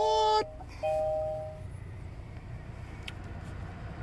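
Electronic dashboard chimes in the cabin of a 2020 Kia Soul: a short tone at the start and a single longer tone about a second in. Under them runs the low, steady hum of the 2.0-litre engine idling.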